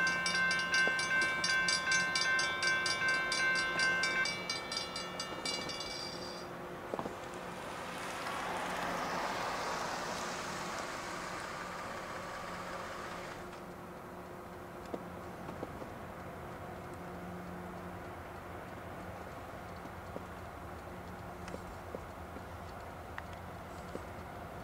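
Railroad grade-crossing warning bell ringing rapidly, with the gates down, stopping about six seconds in. After it, a soft rushing noise swells and fades, then a low steady background.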